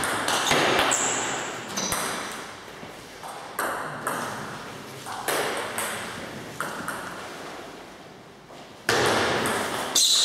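Celluloid-type table tennis ball clicking off the bats and the table, each hit ringing on in the large hall. A quick exchange of hits comes in the first two seconds, single hits follow spaced a second or so apart, and a loud new run of hits starts near the end.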